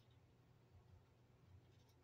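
Near silence: room tone with a faint low hum, and a few faint clicks near the end.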